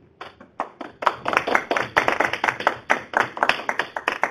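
Audience applauding: a few scattered claps at first, filling out into steady clapping about a second in.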